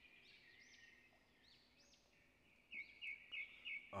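Faint birds chirping in a background ambience, with a quick series of louder chirps near the end.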